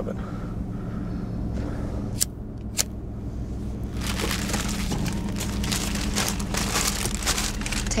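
Steady low hum of a car engine idling, heard inside the car's cabin. Two sharp clicks come about two and three seconds in, followed by several seconds of crinkling and rustling.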